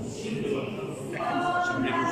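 A group of voices singing together, coming in about a second in with long held notes.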